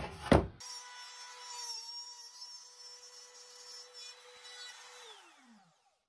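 Compact trim router running with a steady high whine while its bit cuts plywood; about five seconds in it is switched off and its pitch falls as the motor spins down.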